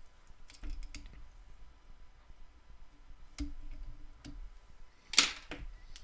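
Faint clicks and handling noise of fingers working a hand whip finish with fine tying thread at the head of a fly held in the vise, with a few small ticks and one brief rush of noise about five seconds in.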